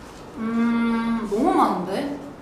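A young woman humming a long, level 'mmm' while she thinks over a question, then sliding her voice up and down in pitch just before the end.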